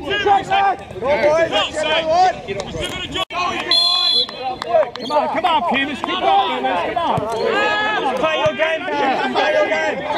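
Several people's voices shouting and chattering at the same time, players and sideline onlookers at a soccer match. About four seconds in, a short whistle blast sounds, typical of a referee's whistle.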